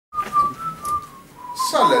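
A single thin whistling tone that wavers a little and slides gradually down in pitch, with a man starting to speak near the end.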